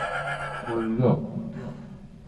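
A man's wordless vocalising: a low held vocal tone that dies away, then a short cry that rises and falls, like a whinny, about a second in.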